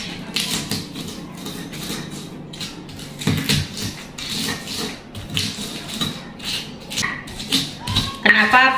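A stone pestle knocking and grinding in a stone mortar (ulekan and cobek), crushing garlic cloves, coarse salt and candlenuts by hand. The knocks come irregularly, about one or two a second.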